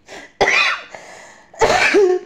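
Two loud, short vocal bursts from a woman, about a second apart.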